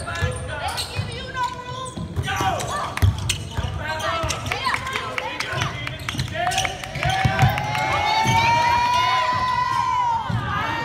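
A basketball bouncing on a hardwood gym floor as it is dribbled, a series of dull thuds, with players' voices calling out in the hall. A long call rises slowly over the last few seconds.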